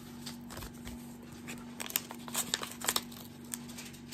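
Paper envelope being handled and its flap worked open by hand: soft scattered crinkles and rustles, thickest around the middle. A faint steady hum runs underneath.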